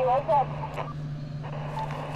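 A voice on single sideband from an Elecraft KX2 transceiver's speaker, cut off above the voice range, stops about half a second in. Then the receiver hisses with band noise over a low steady hum.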